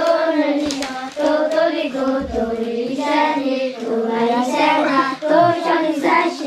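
A group of children singing a song together, holding and bending a melody with no break, with a couple of short hand claps about a second in.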